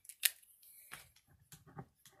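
A single sharp click about a quarter second in, then faint rustling and light taps as a paper scratch-off lottery ticket and a ballpoint pen are handled.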